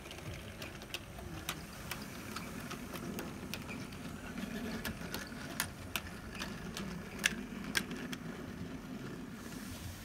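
Model railway train running on a curve: a steady low hum from the locomotive's small electric motor, with sharp clicks at irregular intervals as the wheels of the coach and goods wagons cross the rail joints.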